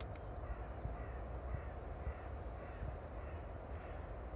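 A bird calling several times in a row, short calls about every half second, over a steady low background rumble, with a brief click near the start.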